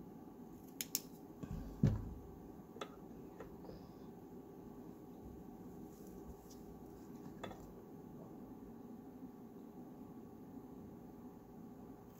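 A few light clicks and knocks as a handheld UV flashlight and small tools are handled and set down on a tabletop, the loudest a soft thump about two seconds in, over a faint steady hum.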